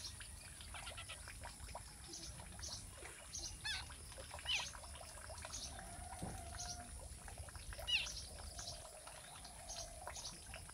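A few sharp, sweeping chirps from a spiny babbler fledgling, the loudest about eight seconds in, over a steady high hiss and light rustling in the grass.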